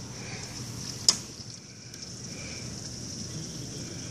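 Heavy rain falling steadily on a lawn, driveway and parked cars, an even hiss, with one sharp click about a second in.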